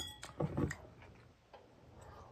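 A sharp clink from a ceramic salad bowl at the start rings briefly. A short scraping burst follows about half a second in, and then there is only faint handling noise.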